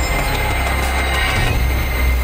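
Sound-design sting of a TV programme ident: a loud rushing whoosh over a deep, steady rumble, cut in suddenly at the change of scene.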